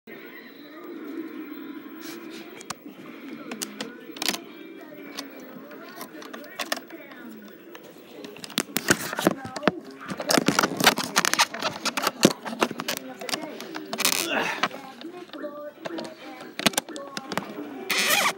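A low, muffled voice for the first several seconds. From about eight seconds in, a run of sharp clicks, knocks and rustles: things being handled close to the microphone.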